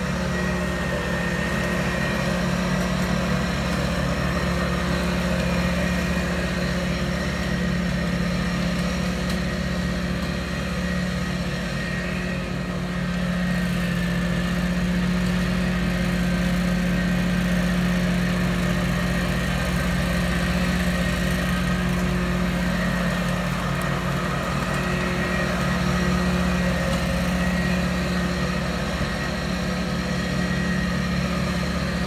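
Walker zero-turn mower's engine running at a steady speed as the mower is driven on a test run, its hydrostatic drives freshly refilled with oil.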